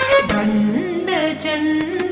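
Carnatic classical song: a female vocal melody in held notes that slide between pitches, over violin and percussion accompaniment.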